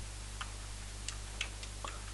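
A few sparse computer keyboard keystrokes, about five quiet clicks spread over two seconds, as a short piece of code is typed, over a steady low electrical hum.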